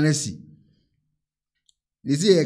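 A speaking voice finishing a word about half a second in, then dead silence broken only by one faint click near the end.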